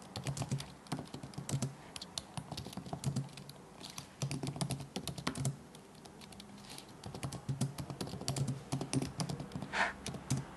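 Typing on a computer keyboard in quick bursts of keystrokes with short pauses between them. A brief, louder sound comes just before the end.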